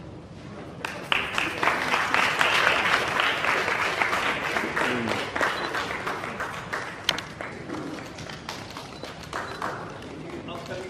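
A small audience applauding. The clapping starts about a second in, is loudest over the next few seconds and then gradually dies away.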